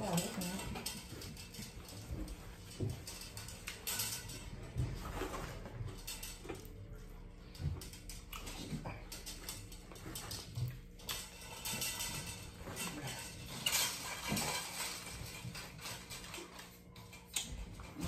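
Eating sounds: a person chewing fried chicken and pulling it apart with her fingers, in irregular soft bursts.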